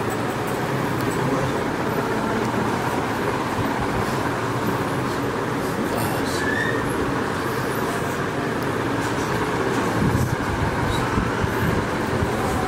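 Steady, loud rumbling noise with no clear rhythm, swelling slightly about ten seconds in.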